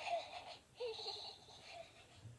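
A young child laughing in two short, high-pitched bursts, one at the start and another about a second in.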